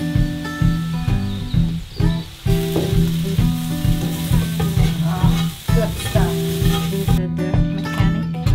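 Snap peas sizzling and frying in a hot wok, under background music with a steady plucked rhythm; the sizzling stops abruptly near the end while the music carries on.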